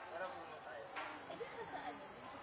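Steady high-pitched insect drone with faint distant voices. The drone is softer at first and comes back louder about a second in.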